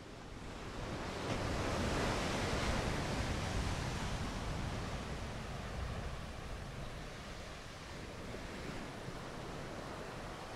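Steady rushing noise like surf or wind, fading in from silence and swelling over the first two or three seconds before settling to an even level.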